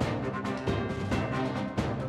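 A TV programme's theme music with a steady, punchy beat, playing under a between-segments title card.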